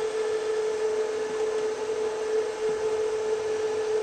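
Cooling fan of a Vacon CX series industrial variable frequency drive running steadily after power-up, an even whir with a constant hum tone through it.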